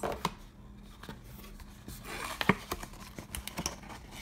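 Paperboard favor box being handled over an open cardboard shipping box: scattered taps, scrapes and rustles of card, with the loudest tap about two and a half seconds in.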